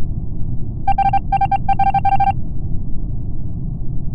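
Video-game ejection-screen sound effect: a steady low rumble with a quick run of short electronic beeps, in four tight bursts, starting about a second in and lasting about a second and a half, like text typing out on screen.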